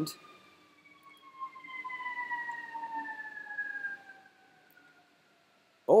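Siren wailing: one pitch with overtones gliding slowly downward over about five seconds, swelling in the middle and fading out shortly before the speaking resumes.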